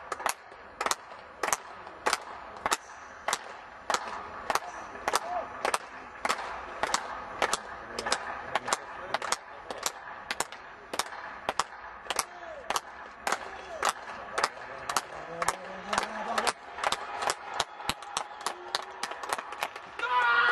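Rhythmic handclapping by spectators, a steady beat of about two and a half claps a second that quickens near the end, keeping time for a javelin thrower as he prepares his run-up.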